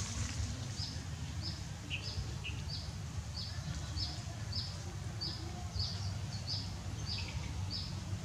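A bird chirping steadily, short high notes repeated about every half second, over a low steady rumble.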